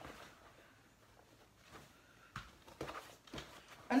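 Near-quiet room, then from about halfway a few soft knocks and faint rustles of a bag being handled.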